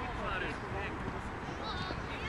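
Faint, high-pitched children's voices calling out during play, scattered short calls over a steady low background noise outdoors.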